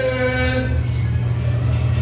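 A man's chanting voice holds one drawn-out syllable for just under a second at the close of a recited ceremonial blessing, over a steady low hum.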